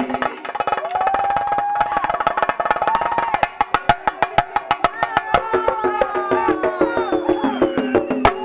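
A Shinkarimelam group of chenda drums struck with sticks in a fast, dense rhythm. About three seconds in, the playing thins to sharper, separate strokes, while pitched tones slide up and down above the drums.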